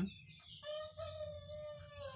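A rooster crowing faintly: one long, drawn-out call starting about half a second in and dropping in pitch as it ends.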